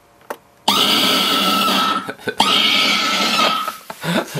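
Scary Maze Game jump-scare scream blaring from laptop speakers: a sudden, loud, harsh scream about a second in, with a brief break in the middle, after a mouse click or two.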